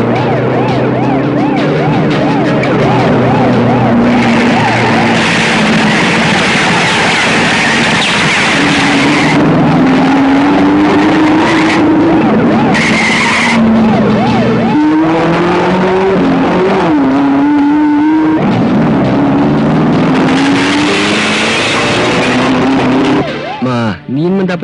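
Car engines revving with shifting pitch and tyres skidding, a loud, continuous car-chase soundtrack.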